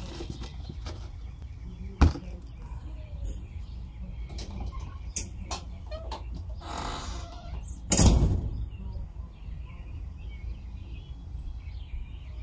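Potting soil being scooped and poured into a cut-open plastic milk jug, with a sharp knock about two seconds in and a louder thump about eight seconds in as the plastic jugs are handled. Faint bird chirps come near the end.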